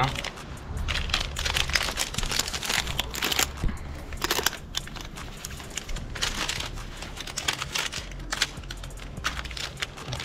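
Paper packet of makhorka tobacco crinkling as it is handled and opened, in many irregular rustles.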